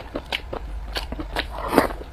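Close-miked chewing and mouth smacking of a mouthful of rice and braised pork, a string of short crackly clicks, the loudest near the end.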